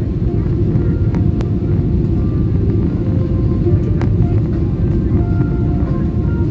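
Steady low rumble of jet airliner cabin noise, heard from inside the cabin during the low approach. Faint short tones come and go above it.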